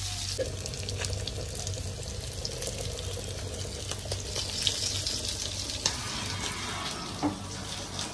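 Small whole fish shallow-frying in oil in a pan: a steady sizzle with fine crackles, nearly done. There is one sharper click near the end.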